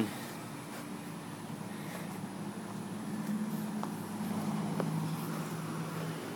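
A steady low mechanical hum under faint outdoor background noise, growing slightly stronger in the second half, with a couple of faint light clicks.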